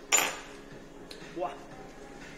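A single sharp clink of cutlery against crockery just after the start, with a brief high ringing: the loudest sound here.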